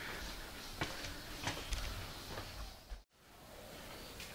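Faint footsteps and handling noise: a few scattered soft clicks and knocks over low background noise. The sound cuts out completely for a moment about three seconds in.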